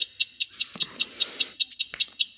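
Fast, even high-pitched ticking, roughly seven ticks a second, with a faint hiss about half a second in.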